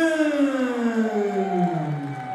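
A ring announcer's long, drawn-out call of a fighter's name over the PA, the final held syllable sliding steadily down in pitch, with a second, higher voice or tone coming in near the end.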